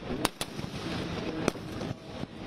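Firecrackers bursting as a Ravana effigy burns: three sharp bangs, two close together about a quarter second in and one about a second and a half in, over a steady crackling din.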